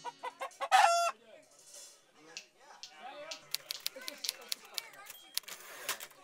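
A chicken's crow played as a logo sound, one loud, short call about a second in, after a few quick notes. Then a room full of chatter with scattered clicks and knocks.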